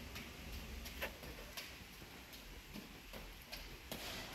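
Faint footsteps on tiled stairs: light clicks about twice a second, slightly uneven, as someone walks up the steps.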